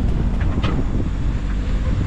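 Wind buffeting the microphone on an open sailboat's cockpit: a steady rushing noise with a heavy low rumble.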